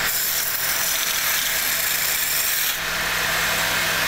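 Wood lathe running, its spinning wooden blank being worked by hand: a steady high scraping hiss over the low hum of the lathe motor.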